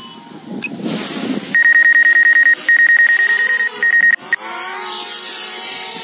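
Toy drone's electric motors heard from its own onboard microphone: a loud, steady high whine with a fast buzz, broken twice, as they spin up. Then a set of wavering, shifting pitches as the drone lifts off.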